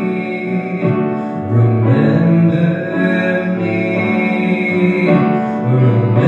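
Grand piano playing sustained chords as the accompaniment to a song, with the bass note changing about a second and a half in and again near the end.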